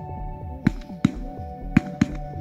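Three sharp shotgun shots fired at a flock of flying ducks, the second and third following the first at uneven gaps of under a second. A steady background music track with a low pulsing beat plays underneath.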